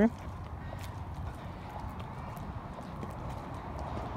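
Footsteps of someone walking quickly on a concrete walkway, faint irregular steps over a steady low rumble of handling and air noise on a handheld microphone.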